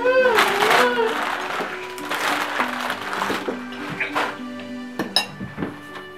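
Soft background music of long held notes stepping up and down in pitch, with wrapping paper and a gift box rustling twice in the first half and a sharp click about five seconds in.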